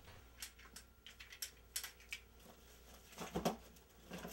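Faint clicks and rustles of a power cord being handled and packed into a soft suitcase, with a somewhat louder rustle about three and a half seconds in.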